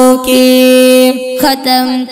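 A Pashto nazam (devotional poem) sung by a solo voice: one long held note for about a second, a short break, then the melody goes on in shorter notes.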